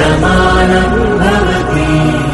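Background music: the opening of a Telugu song, with held melodic lines over a steady low drone.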